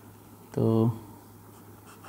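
Pen writing and drawing lines on paper, faint.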